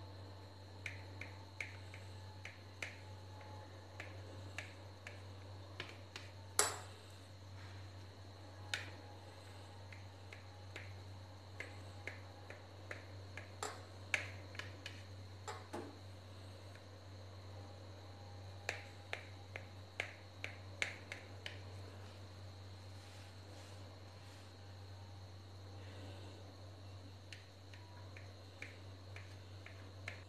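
Kitchen knife cutting through a soft steamed khaman dhokla and clicking against the plate beneath: a scattering of faint, sharp ticks with a few louder knocks, over a steady low hum.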